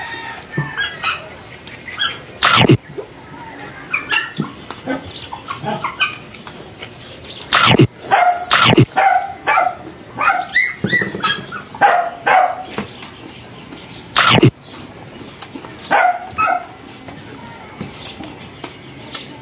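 People eating crispy fried pork by hand: several sharp, loud crunches and smacks of biting and tearing the meat. Between them come many short, high-pitched yips and whines from an animal.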